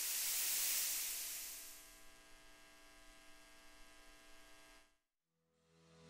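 A hiss that fades away over the first two seconds, over a faint steady electrical hum, then a brief moment of silence. Music begins to fade in near the end.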